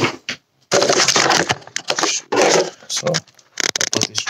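Handling noise from the recording phone being turned and moved: loud rustling and scraping against fabric, then a few sharp clicks near the end.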